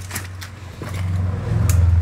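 A motor vehicle on the road by the culvert, a low rumble that swells about a second in and is loudest near the end, with a few faint clicks.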